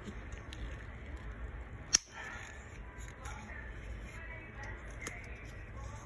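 A single sharp plastic snap about two seconds in, the flip-top cap of a small deodorant tube being opened, with faint handling clicks around it.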